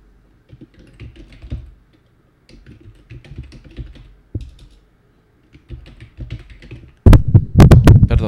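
Typing on a computer keyboard: irregular runs of keystrokes. Near the end, several much louder sharp knocks.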